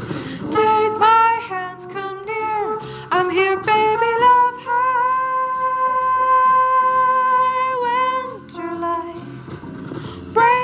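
A woman singing a jazz vocalese line over an instrumental backing, with one long high note held steadily for about three seconds in the middle.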